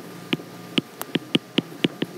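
Stylus tapping on an iPad's glass screen while writing a word by hand: about seven short, sharp clicks at an uneven pace, one for each letter stroke.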